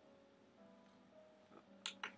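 Faint music playing through an iPod speaker dock, turned down low, with one sharp click near the end.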